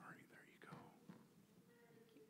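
Near silence, with faint whispered voices in the first second.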